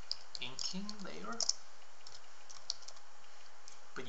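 Computer keyboard being typed on: a quick run of key clicks over the first second and a half, then one more click near the end.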